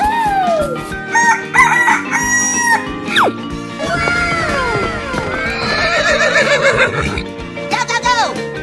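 A rooster crowing, with clucking-like calls just after, over background music. Later come further falling and wavering animal calls.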